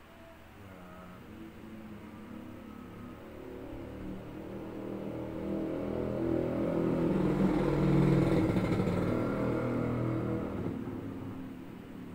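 A motor vehicle driving past, its engine sound swelling to a peak about two-thirds of the way in and then fading away.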